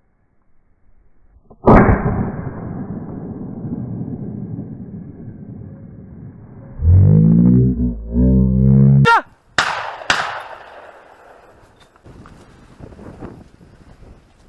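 A single shotgun shot about two seconds in, its echo rolling through the woodland and dying away over several seconds. A loud low buzz follows later, then two more sharp cracks.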